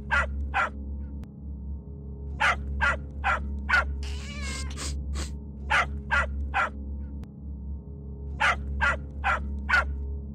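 Dog barking in quick runs of four or five short barks, about three a second, with pauses between the runs. About four seconds in there is a wavering whimper. A steady low hum runs underneath.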